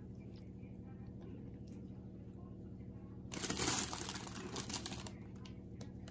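Plastic bag of rocket (arugula) leaves crinkling as a handful is taken out: one loud rustle about three seconds in, then a few smaller rustles. A low steady hum runs underneath.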